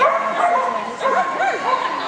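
A dog yipping several times in quick succession, short high calls that rise and fall, the excited barking of a dog running an agility course, echoing in a large hall.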